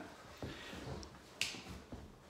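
Quiet pause: faint room tone with a single brief, sharp click about one and a half seconds in.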